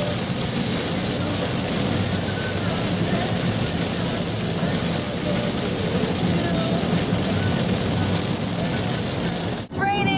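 Steady road and rain noise heard inside a car cabin while driving on a highway through heavy rain.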